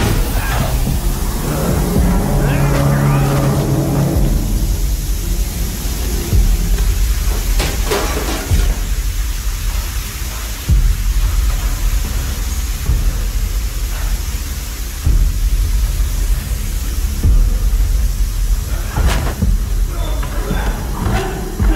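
Film soundtrack: sustained music tones for the first few seconds, then a deep steady rumble with a few sharp hits spread through the rest.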